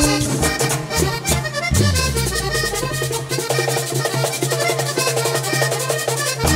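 Live band music led by a button accordion, with hand percussion, drums and bass guitar. The low bass notes slide down and fall away about halfway through.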